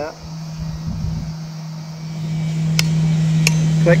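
A click-type torque wrench breaks over with two sharp clicks, a 'click-clack', near the end, signalling that the saildrive's high-tensile stainless bolt has reached its set torque. A steady low hum runs underneath.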